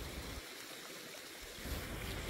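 Faint steady rush of wind through the forest, with a low rumble of wind on the microphone that drops away for about a second in the middle.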